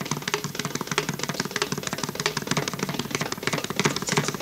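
Mridangam playing a fast, dense run of strokes, about eight to ten a second, over a steady drone.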